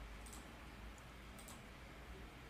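Faint computer mouse clicks, three in all: one early and a quick pair about a second and a half in, over a low steady hum.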